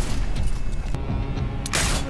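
TV drama soundtrack: a tense music score over a low rumble, with a sudden loud burst of noise shortly before the end.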